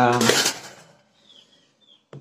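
A voice speaking briefly at the start, then several faint, short, high chirps in the second half, from chicks peeping.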